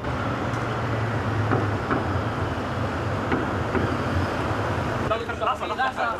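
Motorcade of cars led by a motorcycle driving past, a steady engine rumble and road noise. Voices come in near the end.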